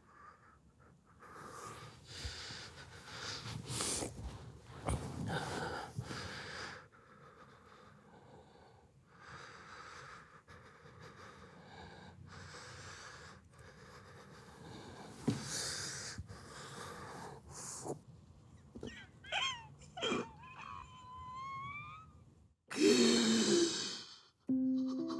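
A man crying: ragged, wheezing sobs and gasping breaths come in waves, with a few wavering high-pitched whimpers near the end and a louder burst just before it ends.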